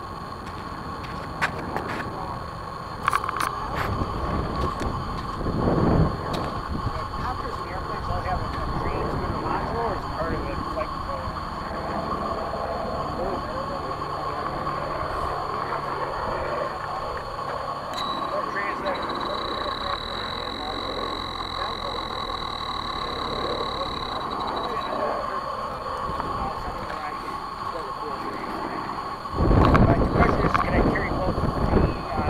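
DJI F450 quadcopter's four brushless motors and propellers running steadily in flight, heard up close from the camera it carries, with one held tone. A higher thin whistle joins for several seconds past the middle.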